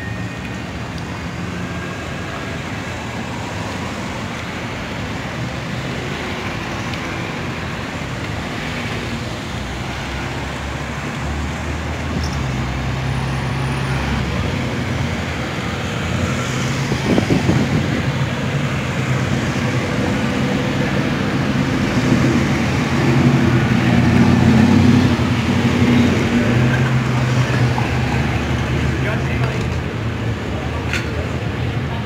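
Cars driving past through an intersection: engine and tyre noise that grows louder through the second half, with a low engine rumble at its loudest a little past the middle.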